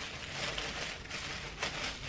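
Faint rustling and crinkling of a large plastic bag being handled, with a couple of soft ticks.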